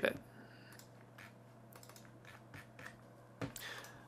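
Faint, irregular clicks of computer keys being typed on a desk, a few spaced-out taps over a low room hiss.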